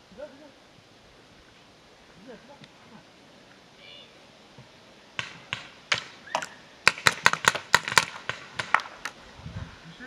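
Paintball markers firing: a rapid, irregular run of more than a dozen sharp pops starting about five seconds in, quickest in the middle, after faint distant shouts.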